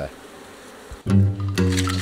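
Faint buzzing of African honeybees around an opened hive. About a second in, background music with held notes starts and is the louder sound.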